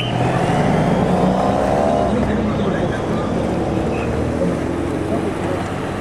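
Race escort motor vehicles passing with a road-race peloton: a steady engine hum, with an engine note rising slightly over the first couple of seconds.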